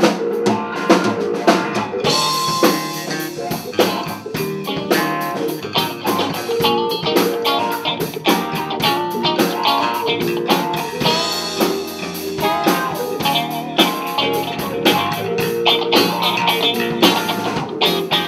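Live blues band playing an instrumental passage on electric guitars and drum kit, the full band coming in about two seconds in, with no singing.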